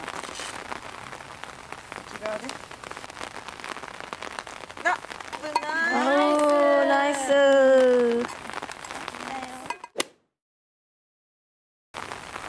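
Rain falling: an even hiss full of small drop ticks. About halfway through, a voice rises in one long drawn-out call lasting a couple of seconds. The sound cuts off suddenly to dead silence near the end.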